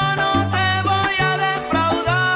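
Salsa music in an instrumental passage: a syncopated bass line stepping between notes under held melody lines, with no singing.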